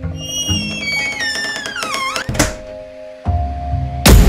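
Background music with an edited-in sound effect: a whistle-like tone falls in pitch over about two seconds and ends in a sharp thud.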